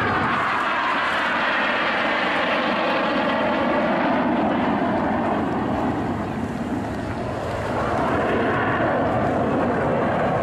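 Red Arrows BAE Hawk T1 jets flying past in a display, their Rolls-Royce Adour turbofans making a continuous jet noise that sweeps and wavers as they pass. It dips a little past the middle and swells again near the end.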